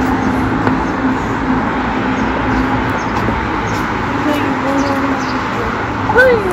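Street traffic noise: a steady wash of vehicle sound with a low engine hum through the first half.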